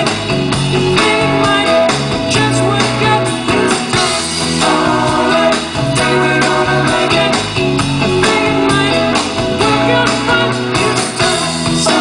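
Live soft-rock band playing, with electric guitars over keyboard, bass and drums, at full volume and without a break.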